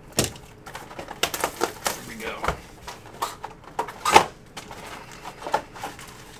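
A sealed cardboard box of Prizm soccer trading-card packs being unwrapped and opened: plastic wrap and cardboard crinkling and crackling in irregular sharp clicks, with one loud crack about four seconds in, then foil card packs sliding out of the box.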